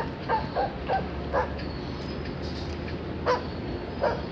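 A dog barking in short, quick barks: five in the first second and a half, then one more a little past three seconds.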